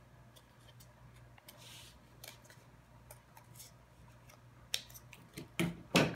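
Scissors snipping thin cardboard in short, irregularly spaced cuts, the last few the loudest.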